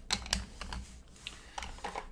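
Hard plastic graded-coin slabs clicking and tapping as they are handled and set into a slotted storage box: an irregular run of light clicks.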